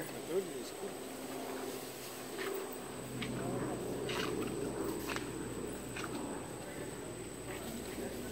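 Faint murmured voices with a few soft, scattered taps of slide sandals stepping on a stone path.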